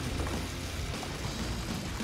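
Steady wind and sea-water noise, with a hooked gag grouper splashing along the surface as it is pulled to the boat. Background music runs underneath.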